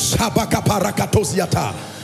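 A man's voice speaking rapidly into a microphone, in quick syllables, over soft background music.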